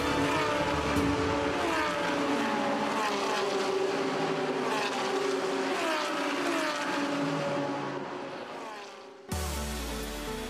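GT3 race cars passing one after another at speed, each engine note falling in pitch as it goes by, mixed with music. The sound fades near the end and gives way suddenly to a low steady tone.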